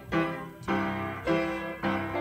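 Piano playing slow sustained chords, with a new chord struck about every half second.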